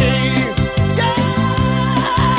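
A male singer sings live into a microphone over an instrumental backing with a steady dance beat. About a second in he holds a long high note.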